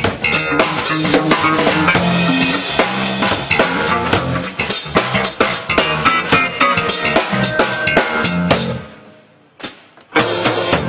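A live funk-fusion trio of six-string electric bass, hollow-body electric guitar and drum kit playing a groove, with a prominent kick, snare and rimshot. Near the end the band stops short for a brief break of about a second, broken by a single hit.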